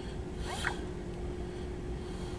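Low steady hum heard from inside a vehicle cabin, with a faint steady tone over it. About half a second in there is a brief zip-like rustle.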